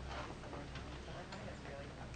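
Faint voices in the room, away from the microphone, over a steady low hum, with a few light clicks.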